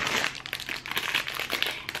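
Plastic food packaging crinkling as it is handled, an irregular crackle that runs on with many small crackles.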